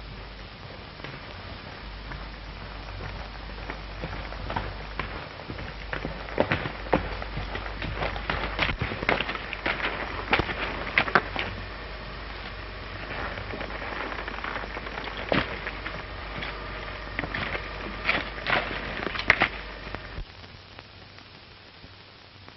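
Horse's hooves clopping irregularly on a stony trail, growing louder toward the middle and again near the end, over the steady hiss of an old film soundtrack.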